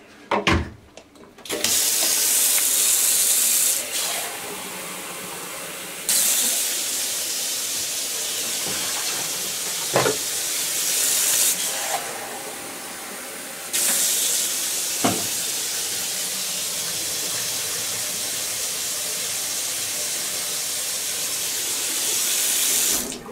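Kitchen tap running water into a coffee maker's glass carafe at the sink, a steady rush that rises and falls in level a few times, with two short knocks about ten and fifteen seconds in.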